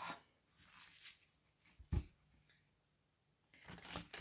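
Tarot cards being handled: a single sharp tap about two seconds in, then a quick run of card shuffling starting near the end.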